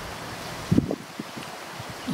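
Steady outdoor background hiss, likely wind on the microphone, with a short low sound about three-quarters of a second in.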